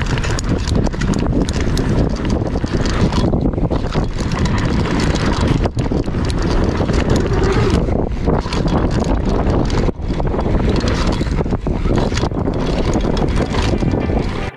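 Mountain bike ridden fast over a bumpy dirt trail, heard close on the bike: a steady rush of tyre and wind noise with constant small knocks and clatters from the bike rattling over the ground.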